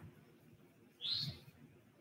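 Near silence, broken about a second in by one brief high chirp.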